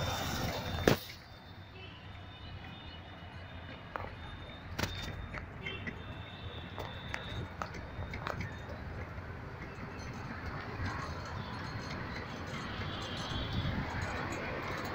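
Road traffic noise heard while riding along a city street: a steady hum of passing vehicles and engines. A sharp click comes about a second in, after which the sound is quieter.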